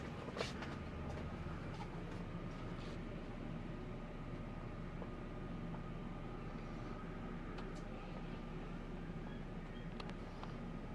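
Scania K410IB bus idling, heard from inside the stationary passenger cabin as a steady low hum with a faint high whine; the bus has only just been started. A few faint clicks along the way.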